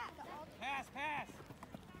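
Faint, distant people shouting across a sports field: two short rising-and-falling calls about half a second apart, near the middle, over a low murmur of other voices.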